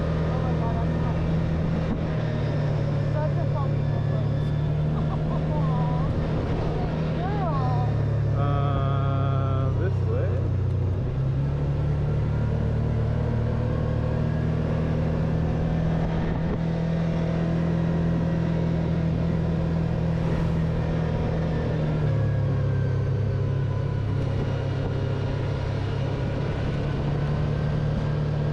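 Kawasaki Teryx4 side-by-side's V-twin engine running steadily as it drives along a dirt trail, its pitch dropping and coming back up a few times, about a third of the way in and again near the end.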